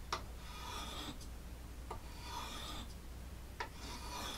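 Knife blade drawn across the oiled fine stone of a Smith's Tri-Hone: three scraping strokes about a second long, spaced about 1.7 s apart, each starting with a light click. These are fine-stone passes that clean up the edge.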